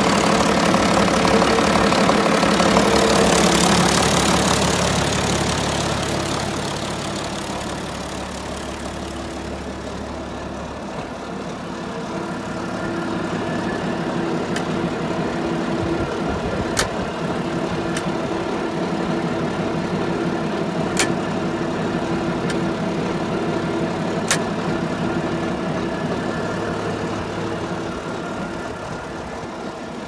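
International 1256's turbocharged diesel engine idling steadily, louder for the first few seconds and softer after that, with a few sharp clicks in the second half.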